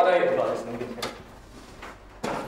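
Indistinct voice trailing off in a small room, with one sharp click or knock about a second in.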